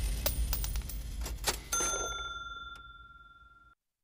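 The tail of an electronic title-sequence music sting: a low bass and a few sharp glitchy clicks, then a single bell-like ding about 1.7 s in that rings and fades away, cutting off to silence shortly before the end.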